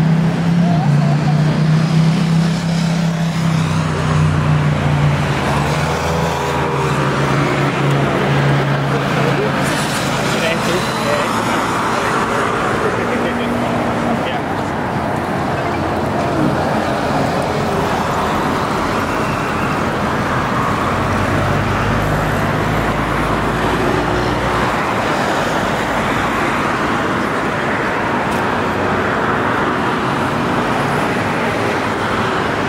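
City street traffic: motor vehicles running and passing, with people talking in the background. A deep, steady engine hum is loudest in the first few seconds.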